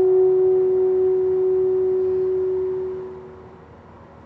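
Alto saxophone and piano holding a long final note that dies away: the upper notes drop out about two seconds in, and the main tone fades to room quiet about three seconds in.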